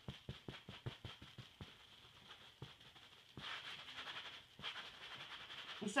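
Damp sponge dabbing dye onto leather in quick soft pats, about six a second, then giving way to softer wiping strokes.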